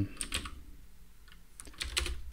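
Typing on a computer keyboard: a quick run of keystrokes, a short lull, then a few more keystrokes near the end.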